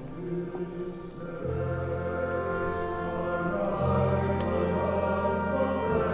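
Symphony orchestra and choir performing together in sustained chords that swell louder, with deep bass notes entering about a second and a half in.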